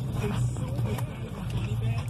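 Steady low hum of a car idling, heard from inside the cabin, with a faint voice over it.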